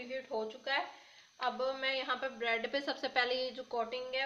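A woman speaking quietly, with a brief pause about a second in.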